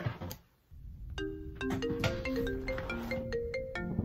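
Mobile phone ringtone: a quick marimba-like melody of short notes, starting about a second in.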